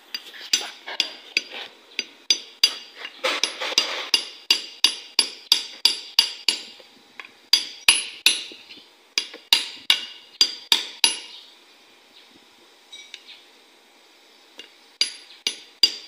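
A steel screwdriver striking and prying at the metal of a Kia Carnival wheel hub assembly, working the broken old ABS sensor out. Sharp ringing metallic clinks come about three a second, stop for a few seconds, then start again near the end.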